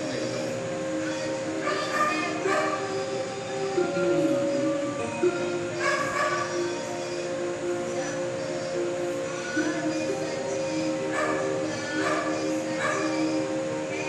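Music from a recorded stage performance played back through computer speakers: steady held notes throughout, with short, sharper sounds breaking in every second or two.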